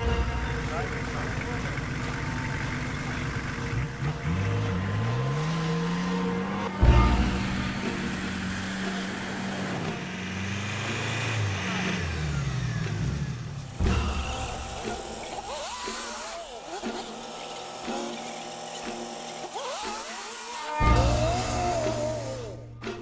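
Off-road 4x4 engine revving up and down again and again while the vehicle labours in deep mud, with a sharp knock about a third of the way in and another loud burst near the end.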